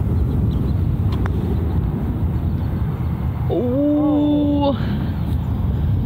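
Wind rumbling on the microphone, with a faint click about a second in as a putter strikes a golf ball. Near the middle a woman's voice gives one drawn-out, wavering exclamation.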